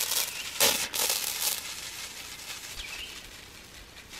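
Pump garden sprayer's wand nozzle hissing as it sprays a fine mist onto tomato plants. It comes in strong surges for the first second and a half, then carries on as a softer hiss that fades.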